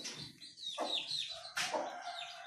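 Caged Aseel chickens calling: repeated short, high peeps that fall in pitch, and clucking. A brief sharp noise comes about three-quarters of the way through.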